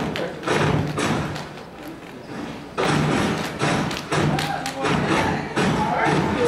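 A step team stomping and clapping in unison: a string of loud, heavy thuds, with a short lull around two seconds in.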